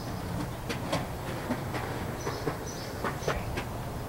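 Skateboard wheels rolling on pavement: a steady low rumble with scattered sharp clicks.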